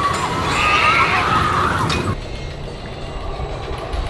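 Roller coaster riders screaming over the rumble of a steel hyper coaster train. The screams cut off suddenly about halfway through, leaving a quieter low rumble.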